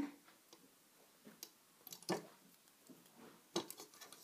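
Faint scattered clicks and ticks of rubber loom bands being stretched and hooked onto the plastic pegs of a Rainbow Loom, with a few sharper ticks about two seconds in and again near three and a half seconds.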